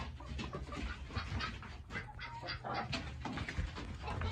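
Chickens clucking in short, scattered calls, over a steady low rumble.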